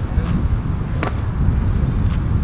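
Wind buffeting the microphone: a steady low rumble, with one short knock of gear being handled about halfway through.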